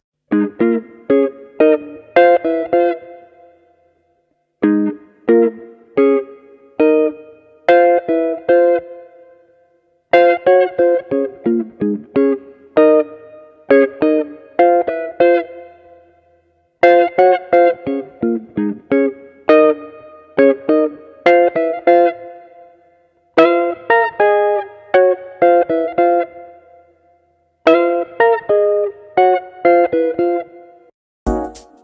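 Hollow-body archtop electric guitar playing jazz octave lines, two notes an octave apart sounding together, in short phrases of plucked notes with brief pauses between them. The guitar is run through a computer for its tone.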